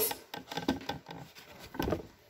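Pages of a paper book being turned and handled on a table: a quick run of soft rustles and light clicks.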